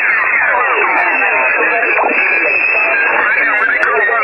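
Single-sideband amateur radio pileup heard through a receiver: many stations calling at once in answer to the DX station's "QRZ, listening down". Their voices pile over one another in a continuous jumble with the thin, narrow sound of radio audio.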